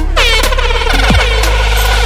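DJ air-horn sound effect over an electronic beat. The horn starts with a quick downward swoop in pitch just after the start and is then held. Beneath it run a steady deep bass and short kick drums that drop in pitch.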